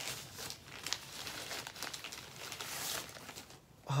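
Protective wrapping crinkling and rustling in irregular crackles as it is pulled off a new camera, dying down shortly before the end.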